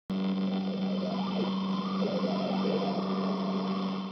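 Intro sound effect of old-television noise: a steady electrical hum under static hiss, with faint warbling tones drifting through it. It cuts in abruptly and fades out at the end.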